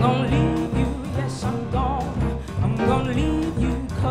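Live jazz combo of piano, guitar, double bass and drums playing a song, with a woman's voice singing a wavering melodic line over it.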